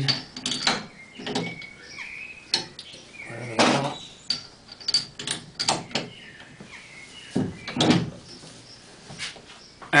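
Scattered metallic clinks and knocks as steel bolts are popped back by hand into a Morgan 3 Wheeler's bevel box mounting, with short irregular gaps between them.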